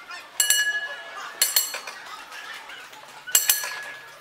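Streetcar bell of the 1912 interurban tram car 1223 clanging, struck three times in quick double hits, each strike ringing on with a clear metallic tone.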